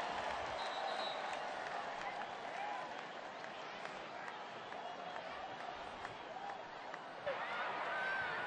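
Stadium crowd noise, a steady haze of many voices with faint scattered calls, slowly dying down.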